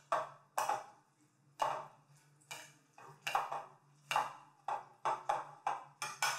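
Metal utensils clinking against a glass mixing bowl while tossing fettuccine with butter: a dozen or so sharp, irregular clinks, each ringing briefly.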